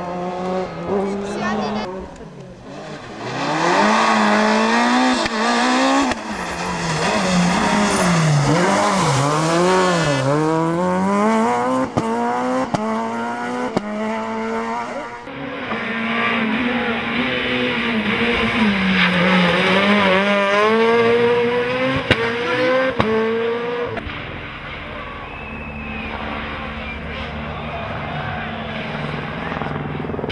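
Rally car engines revving hard, pitch climbing and dropping over and over as the cars accelerate and shift or lift for corners, one car passing and then another. Near the end the engines give way to a quieter, steady low drone.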